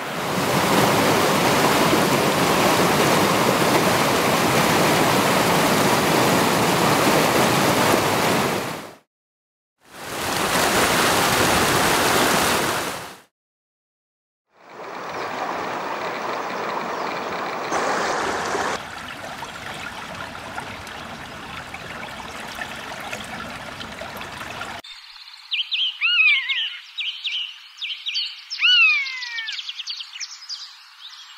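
Loud, even rush of a forest stream over small cascades, broken by two brief silences, then a river rushing more softly. In the last few seconds a bird gives several high calls, each falling in pitch, like a common buzzard's mewing call.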